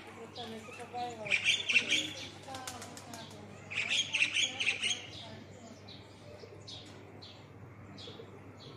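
Small birds chirping: two loud bursts of rapid, high chirping about a second in and again about four seconds in, followed by shorter, fainter chirps near the end.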